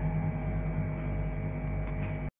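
Steady electrical hum, a stack of low unchanging tones with a fainter higher tone above them.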